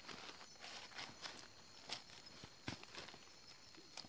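Dry leaf litter rustling and crackling in short, scattered bursts as a juvenile tegu is handled on the forest floor. A faint, steady chorus of night insects runs behind.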